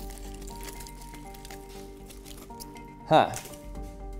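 Background music of steady held notes that step from pitch to pitch, with a short exclaimed 'huh' near the end.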